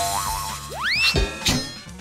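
A cartoon 'boing' sound effect, a quick upward sweep in pitch about halfway through, followed by a couple of short taps, over light children's background music.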